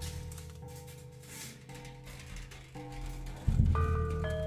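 Prepared drum kit played with extended techniques: a deep drum stroke from just before the start rings on and fades, over sustained ringing metallic pitches. A second deep stroke about three and a half seconds in adds higher ringing tones.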